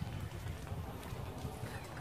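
Low, steady outdoor background rumble with a few faint, irregular taps, in a pause between spoken phrases.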